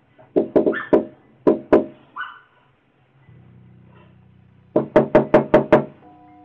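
Knuckles knocking on a front door: a quick run of knocks at the start and two more a moment later, then six fast, even knocks near the end. A low, steady music bed comes in about halfway through.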